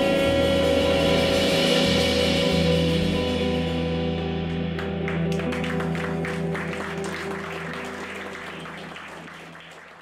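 A live band's final chord rings out and dies away, and audience applause starts about halfway through. The whole sound fades steadily toward the end.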